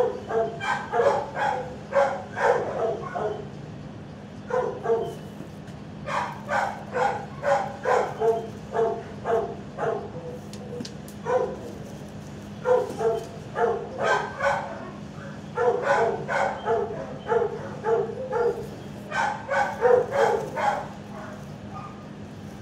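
Dogs barking in runs of quick barks, about two or three a second, pausing briefly between runs, over a steady low hum.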